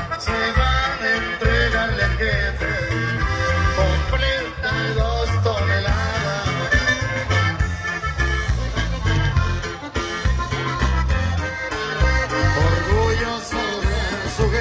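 Mexican regional dance music with a steady bass beat: an instrumental stretch of a corrido between sung verses.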